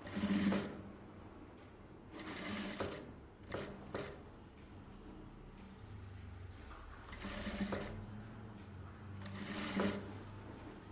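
Industrial sewing machine stitching in short bursts, about five runs of under a second each, stopping in between with only a low hum while the next pleats of a gold border are folded under the needle.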